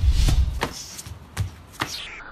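A quick series of about five sharp percussive hits over a low rumble that fades within the first half second.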